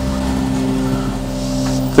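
Range Rover Sport's 5.0-litre supercharged V8 running steadily at low revs as the car crawls at a steep angle, a constant low hum.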